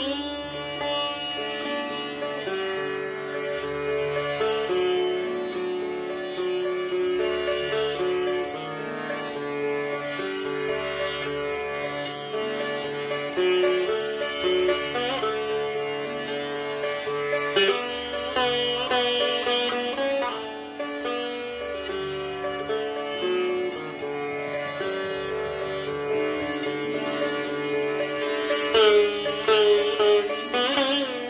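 Sitar playing an alaap in Raag Bhatiyar, a morning raga: quick, closely spaced plucked strokes over sustained ringing notes, with notes bent and slid in pitch about 18 seconds in and again near the end.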